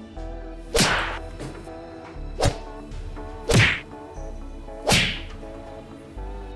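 Background music punctuated by four loud whip-crack whacks, spaced roughly a second to a second and a half apart.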